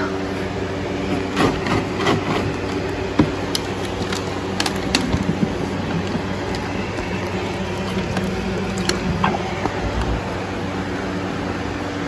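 Steady motor hum with scattered short knocks and clicks, as a horse eats its feed from a bucket in a stall.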